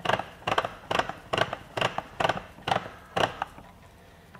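A SKIL 40V string trimmer's line head being turned by hand to wind trimmer line in, giving a steady series of sharp ratchet clicks, about two a second, that fade toward the end.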